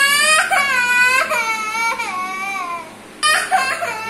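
A toddler crying in long, high-pitched wails, one after another, each sliding down in pitch, with a short break about three seconds in before the crying starts again.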